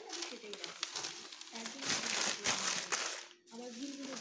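Paper crinkling and rustling for about a second, starting about two seconds in, as the paper collage sheet is handled, over a voice talking in the background.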